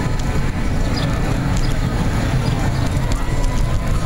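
Wheelchair with an electric-bike attachment rolling up a rough, bumpy street: a steady low rumble with scattered rattles and clicks from the chair's frame.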